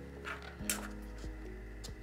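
Quiet background music with two short crackles about a third and two-thirds of a second in: a 3D print cracking loose from a flexible magnetic build plate as it is bent.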